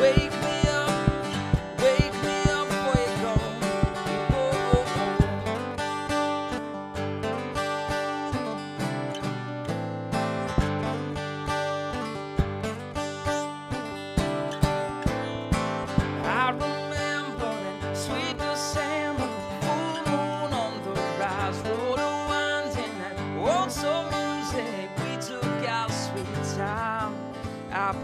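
Steel-string acoustic guitar with a capo, strummed in a steady rhythm through an instrumental break in the song, with no singing.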